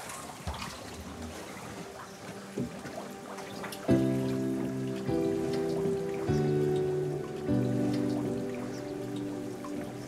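Water running quietly from a hose into a plastic tank. About four seconds in, background music of slow sustained chords comes in and is the loudest sound.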